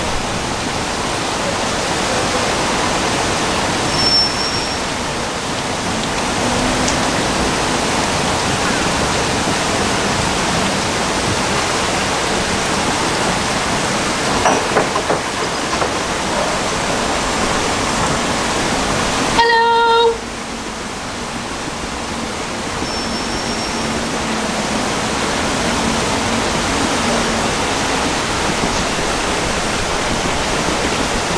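Steady rush of turbulent water pouring below the bridge. About two-thirds of the way in, a short pitched tone sounds once.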